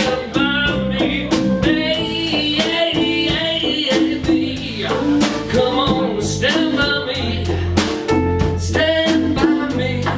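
A live rock-soul band playing: a male lead singer over electric guitar, electric bass guitar, drum kit and congas, with a steady drum beat.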